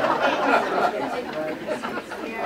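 Several voices talking over one another in a hall, with some laughter, after a fumbled name.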